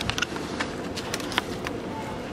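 A few short clicks and knocks from bags and suitcases being handled and loaded into a car, over steady outdoor background noise.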